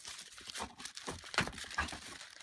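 Plastic poly mailer bag crinkling and rustling as hands pull and tug at it to unwrap it: a run of irregular sharp crackles, busiest in the second half.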